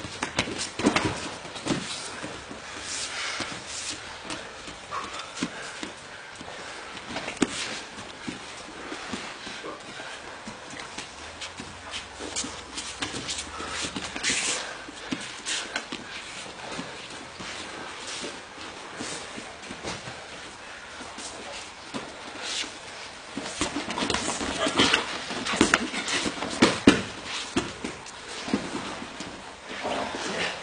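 Two jiu-jitsu grapplers rolling on gym mats: irregular thumps, scuffs and slaps of bodies and hands on the mat, busier and louder for a few seconds toward the end.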